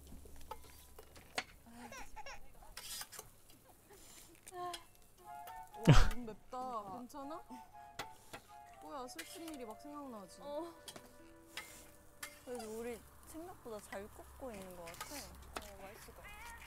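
Variety-show soundtrack played back quietly: voices talking over background music, with a sharp falling sound effect about six seconds in.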